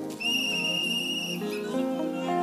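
A high, steady whistle-like tone held for about a second, starting just after the start and cutting off before the middle, over background music with sustained chords.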